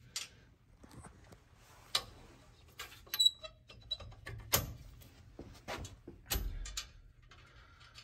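Scattered clicks and clanks of a folding steel-tube piano tilter frame being handled and set in place, a few with a brief metallic ring, and a duller thump a little past the middle.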